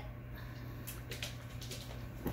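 Doberman's claws clicking on a hardwood floor as it walks, a run of light, quick clicks starting about a second in, over a low steady hum.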